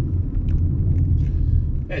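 Steady low rumble of road and drivetrain noise inside the cabin of a Volvo XC40 D3 diesel SUV on the move, with a man's brief "eh" at the very end.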